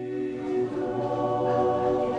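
Slow background music of long held chords, choral in character, growing slightly louder.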